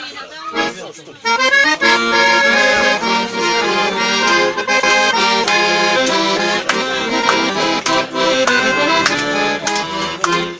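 Chromatic button accordion playing the instrumental introduction to a folk song: a melody over chords, starting about a second in after a moment of talk.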